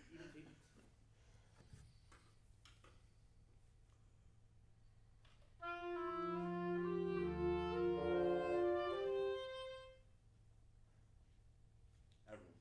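A small wind ensemble rehearsing: after a few seconds of room quiet with faint knocks, the players come in about six seconds in with a short passage in several parts, held notes moving in step, and break off after about four seconds.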